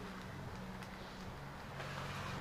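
Steady low background hum with an even hiss and a few faint ticks.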